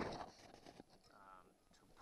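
Near silence: a pause in speech, with the tail of the preceding sound dying away at the start and one faint, brief voice-like sound a little past halfway.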